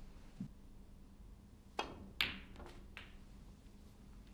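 A snooker shot: the cue tip strikes the cue ball with a sharp click, then a louder, ringing click as the cue ball hits an object ball. Two lighter knocks follow as the balls meet the cushion or pocket.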